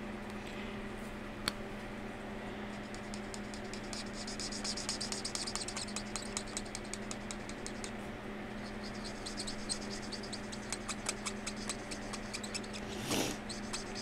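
Pen writing on a paper challenge card: many quick, short scratchy strokes starting a couple of seconds in and running until near the end, over a faint steady low hum.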